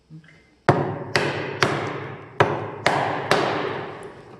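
A hammer striking a Narex mortise chisel as it chops a mortise into a wooden block: six sharp blows in two groups of three, each leaving a short ringing decay.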